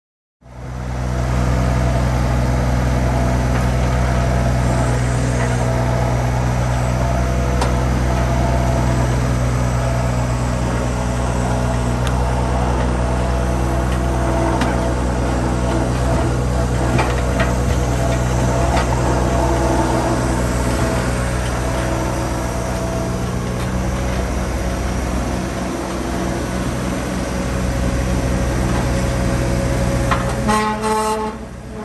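Skid steer loader's engine running steadily while it carries a log on its pallet forks, with a few knocks and rattles in the middle. The sound starts suddenly about half a second in.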